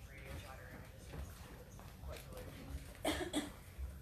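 Indistinct low voices over a steady low rumble of room and stage noise, with a short, louder vocal sound, like a cough, about three seconds in.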